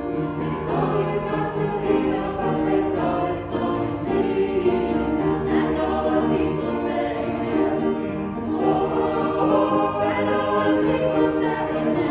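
A small choir of men's and women's voices singing together, steadily and without pause.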